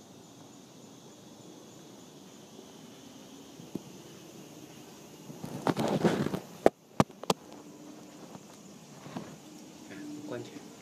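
Faint steady outdoor background, then about five and a half seconds in a second of loud rustling followed by three sharp clicks about a third of a second apart. These are typical of a handheld phone camera being moved and bumped.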